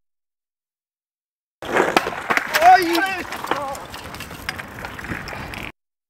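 Dead silence for about a second and a half, then a skateboard rolling and clattering on pavement, with sharp clacks of the board and wheels. A short shout of a voice comes in the middle, and the sound cuts off suddenly near the end.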